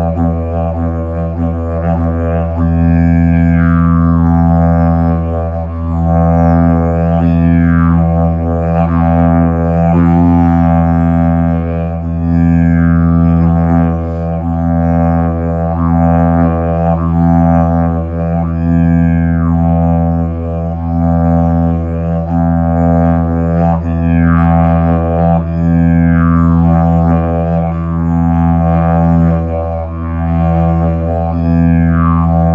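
Hemp didgeridoo droning steadily on a low E, with bright overtones that sweep downward every few seconds as the player reshapes the mouth.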